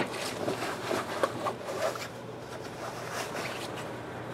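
Clothing rustling as a just-unzipped jacket is taken off, with a few soft handling noises.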